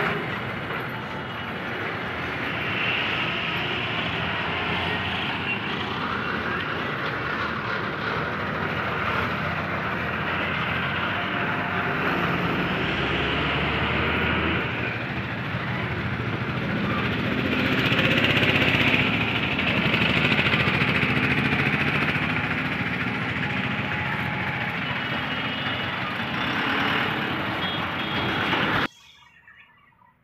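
Steady highway traffic noise that swells now and then as vehicles pass, then cuts off abruptly near the end.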